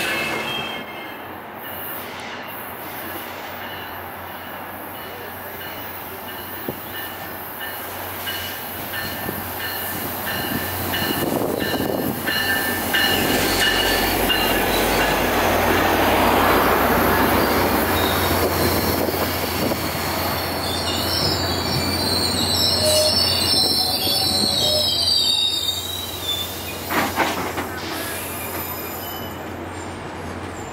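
UTA FrontRunner commuter train moving along the platform, its wheels squealing in thin high steady tones. The train grows louder towards the middle with a low steady drone, and a sharper, higher squeal comes in a little after two-thirds of the way through.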